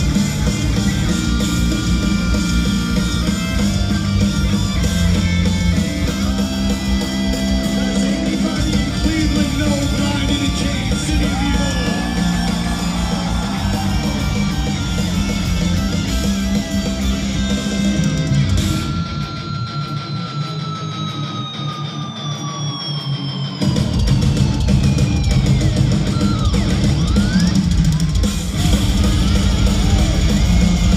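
Heavy metal band playing live: distorted electric guitars, bass and drum kit. About nineteen seconds in, the drums and bass drop out for a few seconds while a held guitar note slides steadily down in pitch, then the full band comes back in.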